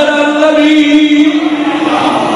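A man's voice chanting a devotional recitation, holding one long steady note that eases off near the end.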